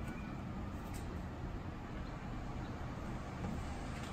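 Steady, even background noise of rain and distant street traffic.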